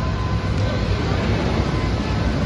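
Outdoor amusement-park ambience: a steady low rumble with a faint, even wash of distant noise and a few thin tones.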